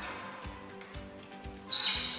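Faint background music, then near the end a sharp metallic clink that rings on briefly with a clear high tone, as a steel marking-out tool is set down against the engineer's square.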